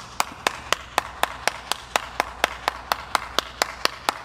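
One person clapping their hands at a steady, even pace, about four claps a second.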